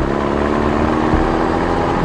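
A truck engine running steadily as the vehicle drives off, a continuous engine sound with a hiss of noise over it.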